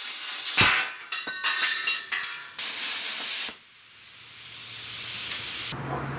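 Plasma cutter cutting through metal plate: a loud hiss with crackle that breaks off briefly under a second in and stops about three and a half seconds in. A quieter hiss follows, swelling until it cuts off shortly before the end.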